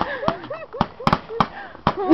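Fireworks going off close by: an irregular run of sharp pops and cracks, several a second.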